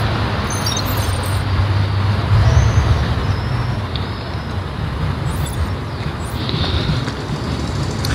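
Town-centre street traffic noise, with a vehicle's engine rumble swelling about two and a half seconds in.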